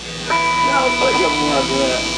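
People talking on a band's stage between songs, over a steady electronic tone from the instruments or amplifiers that starts shortly in and holds.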